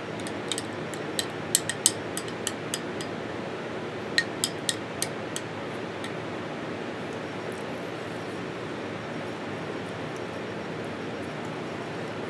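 A spoon stirring thick nacho cheese dip in a glass jar, ticking and clinking against the glass in a quick irregular run of light clicks over the first few seconds. After that there is only a steady room hiss.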